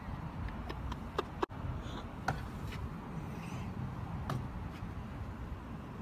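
Outdoor parking-lot background noise: a steady low rumble with several short, sharp clicks, most of them in the first half.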